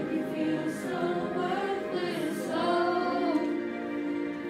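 A group of student voices singing a pop ballad together as a choir, with a karaoke backing track.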